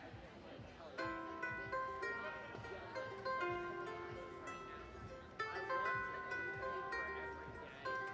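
A charango playing a song's introduction: plucked notes and chords that ring on, starting about a second in, with fresh strikes every second or two.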